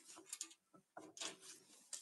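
Near silence with a few faint clicks and light rubbing as a hand picks loose rivets off an aluminum boat's hatch lid.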